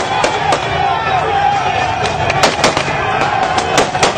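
Gunfire in a street crowd: about ten sharp shots at irregular intervals over the steady noise of a shouting crowd.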